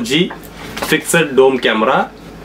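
A man speaking, with a brief knock and scrape about a second in as the cardboard box of a dome camera is handled on a glass counter.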